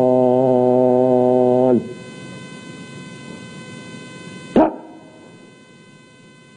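A man shouts a military drill command: a long, drawn-out preparatory word held on one pitch, then, after a pause of nearly three seconds, a short, sharp executive word about four and a half seconds in whose pitch drops. Troops answer the command with a salute.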